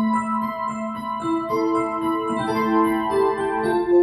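The DX electric piano voice of a Yamaha B2 SC2 silent piano, played through a powered speaker fed from the piano's headphone socket. Slow held notes and chords each ring on for a second or more.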